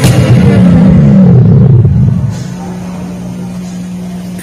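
Stacked loudspeaker cabinets of a sound-system rig playing loud bass: low notes sliding up and down for about two seconds. The level then drops and a single steady low tone holds.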